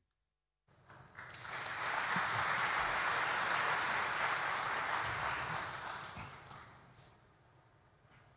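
Audience applause that starts about a second in, swells quickly, holds steady, then fades away over the last few seconds.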